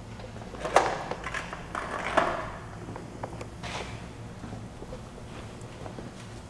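A few sharp knocks and clicks, the loudest about a second in and just after two seconds, over a low steady hum in a room.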